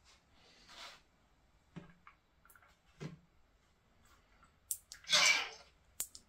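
Mostly quiet handling of a bare circuit with a few faint clicks, then near the end a sharp click of a tactile switch and a short recorded sound played through a small speaker on a sound-playback module.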